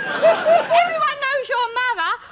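A man laughing, breathy at first and then in short pitched peals.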